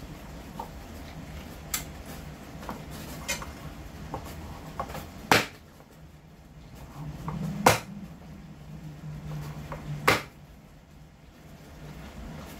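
A cleaver cutting an onion on a plastic cutting board: small ticks and taps of handling, with three sharp knocks of the blade on the board, the first about five seconds in and the others a little over two seconds apart. A steady low hum runs underneath.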